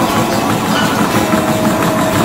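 Treadmill running at speed: the belt and motor rushing, with the running footfalls thudding on the belt, and a thin steady whine that comes in about halfway.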